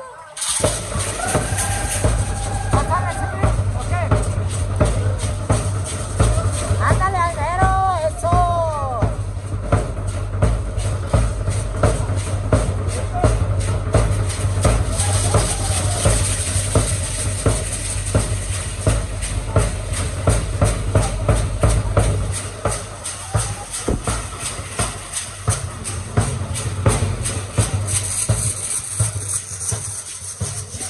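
A bass drum beats a steady, driving dance rhythm and the dancers' hand-held gourd rattles shake in time, starting suddenly just after the beginning. The drum drops out about two-thirds of the way through while the rattles keep going.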